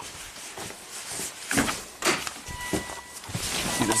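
Footsteps, clothing rustle and a few short knocks as a person moves and climbs into a car's driver seat. A steady high electronic tone comes on about two and a half seconds in.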